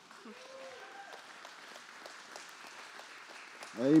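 A congregation applauding in a large hall, with a few voices calling out early on; a man's voice says "amen" near the end.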